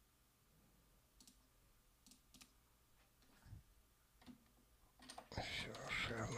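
A few faint, sparse clicks from working the computer, then a person's voice starting about five seconds in, much louder than the clicks.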